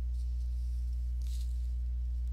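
Steady low electrical hum with faint overtones, with a brief soft hiss a little past a second in.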